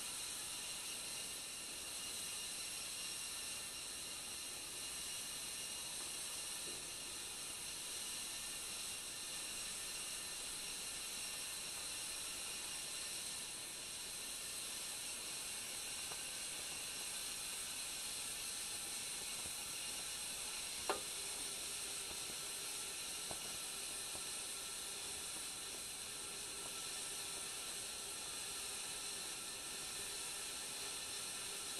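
Stovetop whistling kettle heating water over a gel-fuel camping stove: a steady faint sizzling hiss as the water warms toward the boil, not yet whistling. A single sharp click about 21 seconds in.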